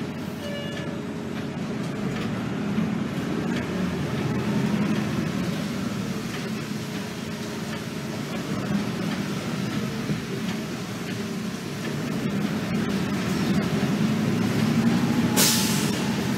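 RTS diesel transit bus heard from inside the passenger cabin while driving: a steady low engine and road rumble that swells as it pulls away, with a faint whine rising and falling in pitch. A brief hiss near the end.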